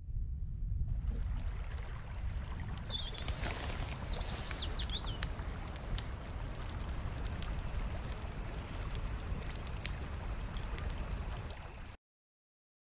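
Outdoor ambience under a logo intro: a steady low rumbling noise with a few short, high bird chirps a couple of seconds in, and a faint steady high tone through the second half, cutting off at the end.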